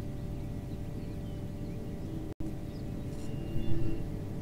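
Steady low motor hum: a rumble under a drone of several steady tones, which cuts out for an instant about two and a half seconds in.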